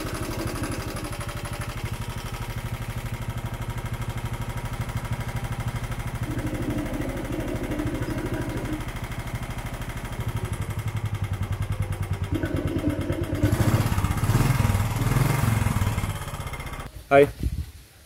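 Royal Enfield Standard 350's single-cylinder UCE engine idling with a steady, even beat of firing pulses, getting somewhat louder about ten seconds in. The engine sound breaks off about a second before the end.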